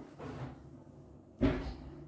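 A single low thump about one and a half seconds in, with a faint rustle before it, from the pianist moving and settling at the piano before playing.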